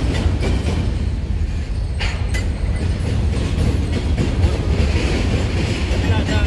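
Mixed freight train of covered hoppers and tank cars rolling past at speed: a loud, steady rumble of steel wheels on rail, broken by a few sharp clicks and knocks from the wheels.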